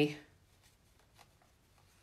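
Faint handling of paper and cardstock: a few soft ticks as a die-cut paper butterfly is positioned on a card, otherwise near silence.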